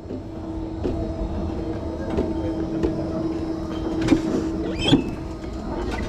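Wiegand summer bobsled sled rolling along its metal track: a continuous rumble from the wheels with a steady hum that fades about five seconds in, and a few sharp clacks about four and five seconds in.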